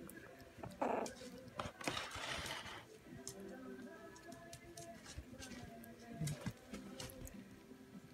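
Three-week-old puppies tussling on a blanket, with a short yelp or whimper just before a second in, then rustling and small scratchy clicks of paws scuffling on the bedding.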